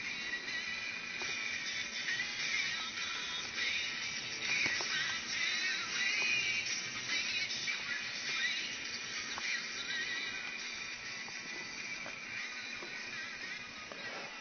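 Faint, thin music with almost no bass, playing through a homemade paper-plate speaker: a spliced headphone wire laid on aluminium foil over a rare earth magnet, fed from a portable stereo's headphone jack.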